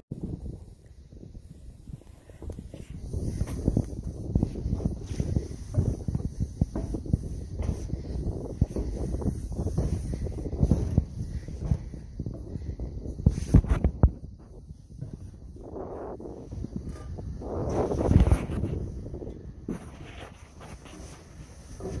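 Wind buffeting a phone microphone, with footsteps and knocks on a galvanized steel grain-bin catwalk and stairs, a few knocks louder than the rest.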